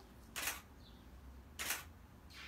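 Camera shutter clicking twice, about a second and a quarter apart, as photos are taken.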